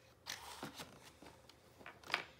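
Faint handling noise: plastic equipment being lifted and moved in a foam-lined hard case, a string of soft, irregular scrapes and knocks.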